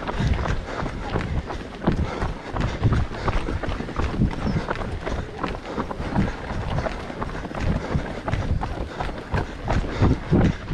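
Footsteps of several runners on a paved path, at a steady running pace.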